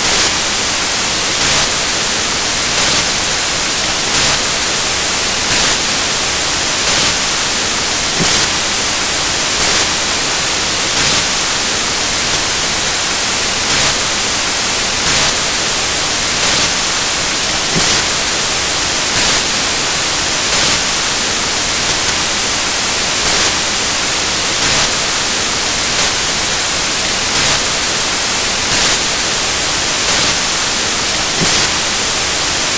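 Loud, steady static hiss, with a faint regular pulse about every second and a half; no voice comes through it.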